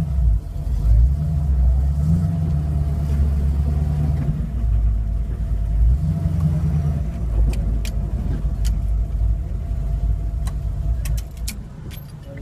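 A 1971 Ford Maverick's engine running at fairly steady, moderate revs, its low note weakening after about seven seconds. A few sharp clicks come in the second half.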